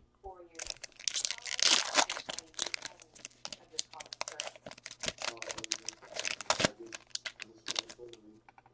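Plastic-foil wrapper of a trading-card pack being torn open and crinkled by hand, a dense run of crackles and rustles that is loudest about two seconds in, then the cards being slid out and handled.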